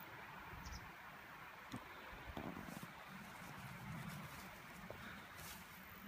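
Quiet outdoor background with a faint steady hiss and a few soft knocks and rustles.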